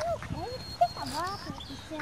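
Faint voices of onlookers exclaiming and murmuring, their pitch sliding up and down.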